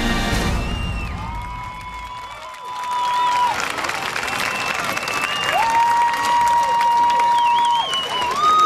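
Processional music fading out in the first two seconds or so, then a large outdoor crowd applauding and cheering, with several long held shouts rising above the applause.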